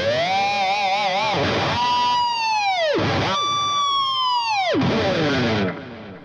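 Electric guitar with a Floyd Rose tremolo doing divebombs. First a note warbles as the whammy bar is shaken. Then two high, held squealing harmonics each plunge steeply in pitch as the bar is dived, about a second and a half apart.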